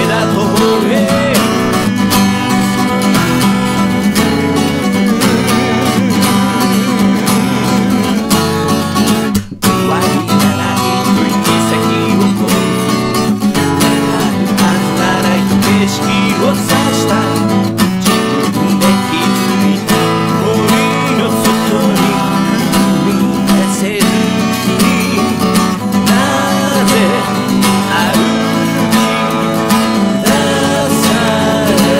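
Acoustic guitar music, played continuously with a full, dense sound. It breaks off for a moment about nine and a half seconds in, then carries on.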